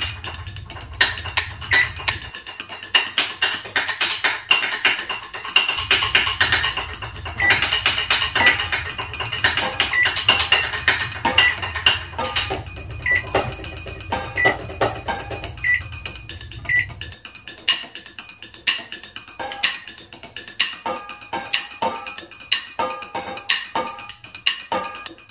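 A homemade percussion piece: drumsticks playing rhythms on a practice pad and on a row of metal saucepans, with ringing metallic strikes. A low steady hum from a running microwave oven sounds under much of it and stops about 17 seconds in.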